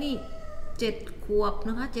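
A tabby cat in a plastic pet carrier meowing: one drawn-out call that falls in pitch and ends right at the start, followed by a woman speaking.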